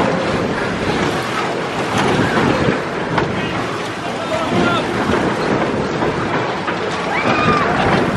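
Fairground din around a spinning Scrambler ride: the ride running, with a mix of voices and a couple of short calls from riders or bystanders, and wind buffeting the microphone.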